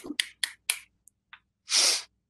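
Hand clapping picked up over a video call: a few quick single claps, about four a second, that trail off within the first second. A short hissy, breathy noise follows near the end.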